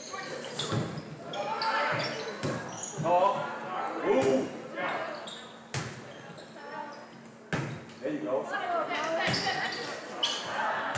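A volleyball being struck during a rally in a gymnasium: sharp hits a second or two apart, echoing in the large hall, mixed with players' and spectators' voices.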